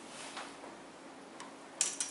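Quiet classroom room tone in a pause of a lecture, with faint light ticks about a second apart and a short, sharper noise near the end.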